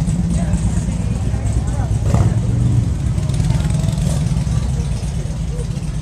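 Steady low rumble of motorcycle engines running, with people talking in the background.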